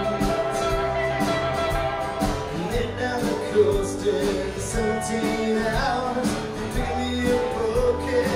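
Live band playing a country-rock number on acoustic guitars, electric guitar and upright bass over a steady drum beat.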